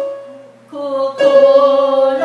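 A woman singing a slow melody. A held note fades away, and after a brief break the next phrase starts on another long sustained note about a second in.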